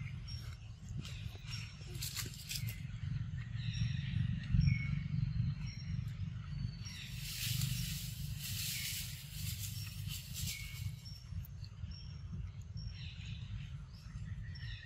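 Forest ambience: a bird gives a short high peep about once a second over a steady low rumble. A loud, high buzzing hiss of insects swells in about halfway through and stops about three seconds before the end.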